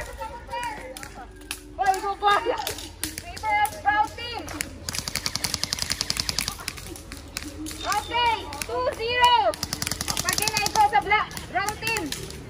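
Airsoft guns firing on full auto: two rapid runs of snapping shots, each about two seconds long, one near the middle and one near the end, with scattered single shots between them. Players shout to each other throughout.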